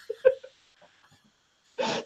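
A woman's wheezing, breathless laughter: two short voiced gasps in the first half-second, a quiet stretch, then a loud breathy burst of laughter near the end.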